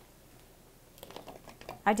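Peeled garlic cloves tipped from a plastic bowl into a mini food chopper's clear plastic bowl: a quick run of light clicks and taps starting about a second in.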